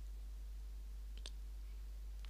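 Quiet room tone with a steady low hum, and two faint clicks a little past a second in.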